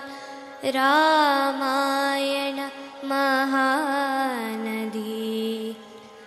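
A girl's voice chanting a Sanskrit verse to a Carnatic-style melody, with long held notes and wavering ornaments. It pauses briefly just after the start, drops to a lower held note about four seconds in, and breaks again near the end.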